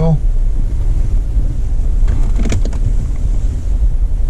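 A Jeep's engine idling while the vehicle stands still, heard from inside the cabin as a steady low rumble. A short, faint sound comes a little past two seconds in.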